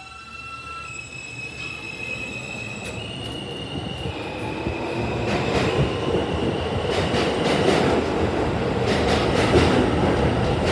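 R160A subway train pulling into an underground station. A high electric motor whine steps in pitch over a rumble that grows steadily louder as the train approaches. From about halfway in, the cars pass close by with quick clicks from the wheels over the rails.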